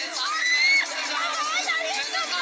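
Crowd cheering and shouting, several high voices calling out over one another.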